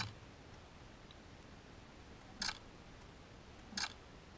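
Two faint, short camera shutter clicks about a second and a half apart, from a Canon PowerShot G7X fired remotely from a smartphone app.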